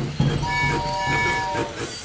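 Cartoon toy steam train whistle: one toot of several steady tones sounding together, held for over a second, starting about half a second in.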